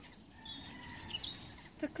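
Songbird calling outdoors: a quick run of short, high, falling chirps from about half a second in, over faint steady background noise.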